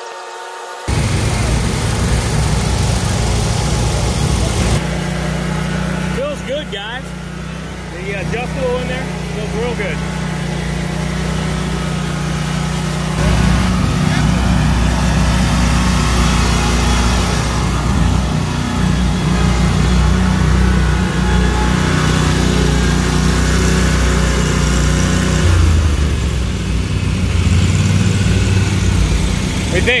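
Engine of a Cub Cadet Pro X 600 stand-on mower running with a steady hum. Its sound shifts about five seconds in and again about thirteen seconds in.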